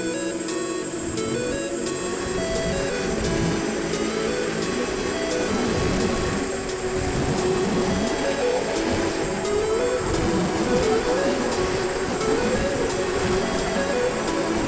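Electronic music with a steady beat.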